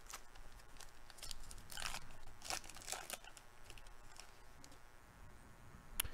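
A baseball card pack wrapper being torn open by hand, faint crinkling and tearing with a few louder rips about two and three seconds in.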